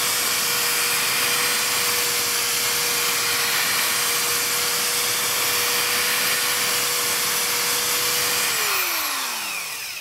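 Corded electric drill spinning a purple foam pad loaded with rubbing compound against a car door's clear coat, the compounding step that buffs out sanding haze. It runs at a steady speed with a steady whine. Near the end it is let off and the whine falls as the motor winds down.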